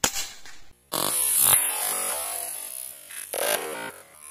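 A single shot from a Hatsan Vectis .22 (5.5 mm) PCP air rifle, a sharp crack at the very start that dies away within a second. From about a second in, electronic music plays loudly and steadily, cutting out near the end.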